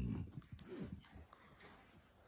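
A malamute puppy making a couple of short, faint, low vocal noises in the first second.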